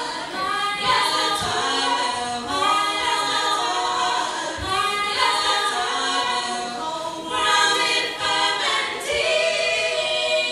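Female vocal group of four singing a cappella in harmony, several sung voices moving together with no instruments.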